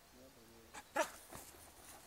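A Belgian Malinois in bite-work training gives a faint, high whine, then two short, sharp barks just before and about a second in as it faces the helper in the bite suit.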